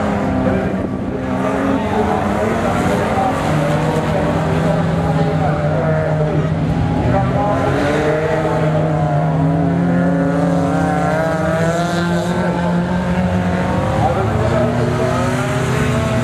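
Engines of old hatchback race cars running hard on a dirt track, their pitch rising and falling as they rev through a bend.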